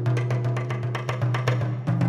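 Jazz drum kit played with sticks: a fast, dense run of strokes on the snare, toms and cymbals, over a steady low note held underneath.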